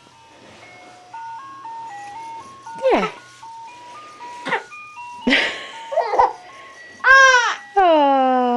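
A crib mobile playing a simple electronic lullaby tune, one note at a time, about three notes a second. Over it a baby gives a few short squeals, the loudest a rising-then-falling wail near the end.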